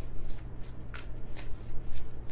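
A tarot deck being shuffled by hand: a steady run of soft, quick card flicks and rustles, several a second.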